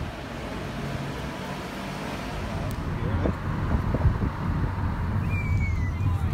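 Street traffic noise: a steady rumble of passing vehicles that grows slowly louder, with a few short knocks in the second half.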